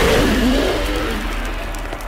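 Firework burst sound effect: a loud hiss of spraying sparks that slowly fades, with a low sound wavering in pitch underneath it in the first second.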